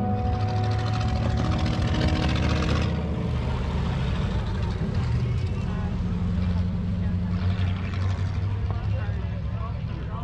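Engines of race cars running as they lap a dirt track, a steady low drone throughout. Voices can be heard toward the end.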